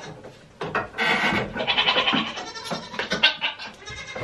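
Goats bleating: a run of loud calls starting about half a second in and going on for about three seconds.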